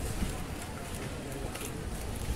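Indistinct voices over a steady outdoor background hiss, with a couple of faint clicks near the end.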